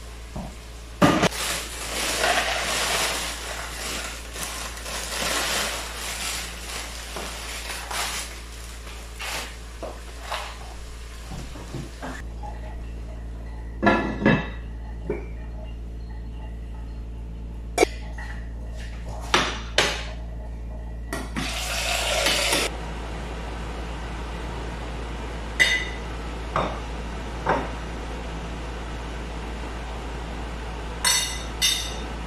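Metal pots, a pot lid and serving utensils clattering and clinking in kitchen handling: a busy stretch of continuous noise for the first twelve seconds or so, then separate sharp knocks and clinks.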